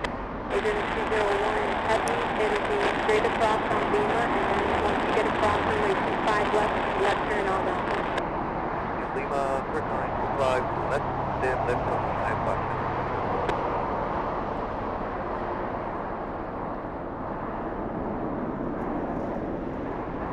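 Steady outdoor traffic-like background noise with indistinct voices talking in the background, the voices fading out in the second half.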